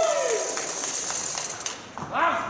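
A spectator's drawn-out cheer that falls in pitch and ends about half a second in, followed by a hiss that fades away.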